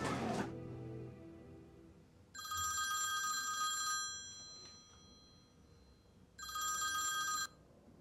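Mobile phone ringing twice with an electronic ringtone, each ring a steady tone about one to two seconds long with a quiet gap between. Background music fades out at the start.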